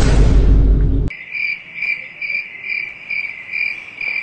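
A loud, deep rumbling burst that cuts off after about a second, then crickets chirping in a steady rhythm of about two chirps a second: the comic 'awkward silence' sound effect.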